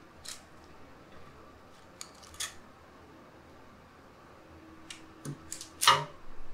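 Sparse light clicks and taps of kitchen utensils against a glazed ceramic plate as grilled fish is laid on it, with the loudest knock just before the end.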